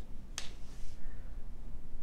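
A single sharp click about half a second in, followed by a short soft hiss like a breath, over a low steady room hum.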